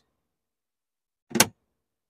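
A molded plastic glove box lid on a boat's dash console snapping shut, one sharp clack about a second and a half in.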